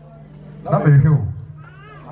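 A man speaking through a microphone and public-address system, a short phrase about a second in, over a steady low hum. A brief high, wavering voice-like sound follows near the end.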